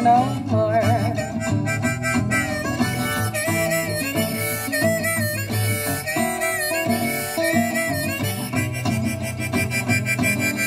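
Blues instrumental break: a harmonica plays bending, wavering notes over acoustic guitar accompaniment.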